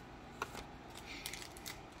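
Faint clicks and light rustling of trading cards and cardboard packaging being handled on a table.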